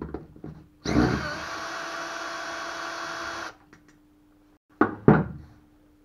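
Cordless drill-driver running for about two and a half seconds, backing out a fastener on an outboard motor's lower-unit gearcase, then two sharp knocks near the end.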